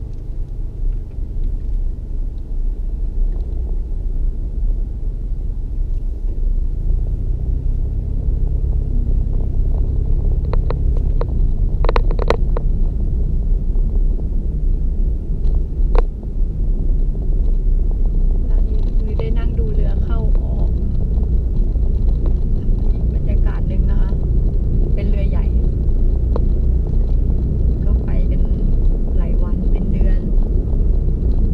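A car's steady low road and engine rumble, heard from inside the cabin while driving; faint voices come in during the second half.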